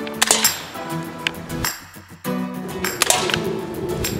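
Background music with a steady melody, with a few sharp clicks over it near the start and again about three seconds in.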